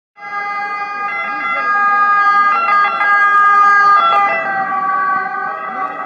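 An ambulance siren sounding in steady held tones as the ambulance approaches along the street. It grows louder toward the middle and eases slightly near the end.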